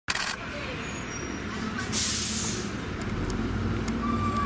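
Street traffic with a steady low engine rumble. About two seconds in, a truck's air brakes give a short, loud hiss that fades.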